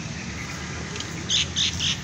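A bird giving a quick run of harsh, high squawks, about four a second, starting a little over a second in.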